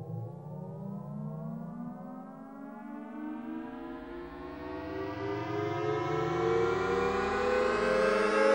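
Electronic synthesizer tones in several layers, sliding slowly upward in pitch together like a siren sweep and growing louder in the second half.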